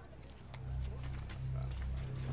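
Low sustained drone from a film soundtrack, swelling in about half a second in and growing louder, with scattered faint clicks and taps above it.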